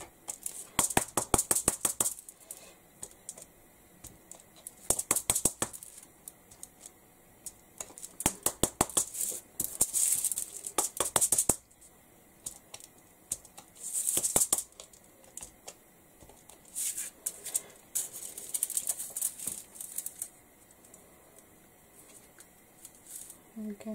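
Plastic credit card scraping white gesso across a plastic stencil in several bursts of quick, clicking scrapes, with short quiet pauses between strokes.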